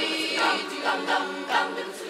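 A large girls' choir singing, the many voices holding notes together.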